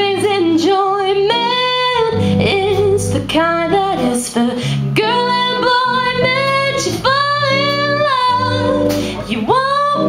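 Women singing with a live band: long held and sliding sung notes over guitar, a low accompaniment line and a drum kit with cymbal hits.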